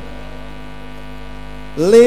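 Steady electrical mains hum through a live sound system while the singing pauses. Near the end, a singer's voice comes back in on a rising note.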